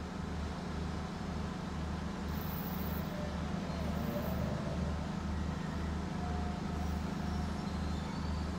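A steady low mechanical hum whose lowest part pulses evenly, a little over twice a second.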